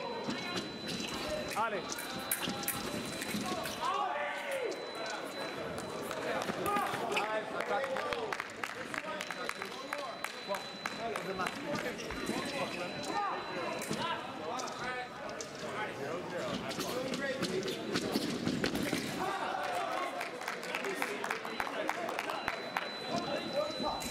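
Foil fencers' footwork thudding on the piste and sharp clicks of blades and equipment during a bout, over a steady background of voices in a large hall.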